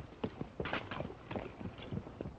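Horse's hooves clopping in a quick, uneven run of beats, several a second, as the horse moves off at speed.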